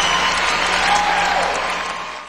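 Large audience applauding, a dense wash of clapping that begins to fade near the end.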